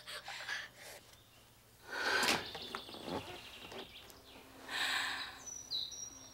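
A boy's sobbing gasps: two loud, ragged breaths about two and five seconds in, between quieter sniffles. A short high bird chirp comes near the end.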